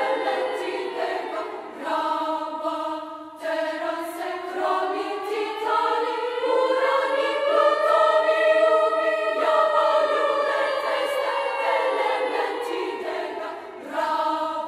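Women's choir singing sustained chords without words. The chords change abruptly twice in the first few seconds, then the voices slide slowly upward together and back down, with another sudden change of chord about two-thirds of the way in.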